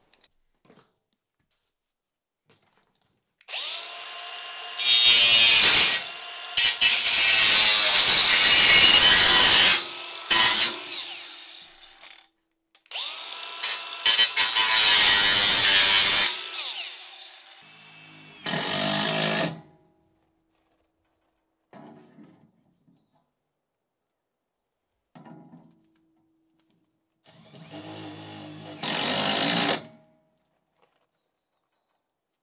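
Cordless angle grinder cutting corrugated sheet-metal roofing: two long cuts of about eight and three seconds, a whining motor under a loud, hissing cut. Later come a few shorter, lower bursts.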